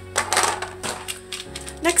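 Small hard polymer clay charms clicking and clattering against a clear plastic compartment box as they are handled and set down, a quick run of light knocks that stops about a second and a half in.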